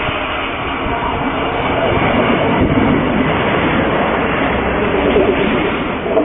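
Passenger train passing close by, a loud rumble and clatter of wheels on rail that builds to its loudest about five seconds in as it goes past.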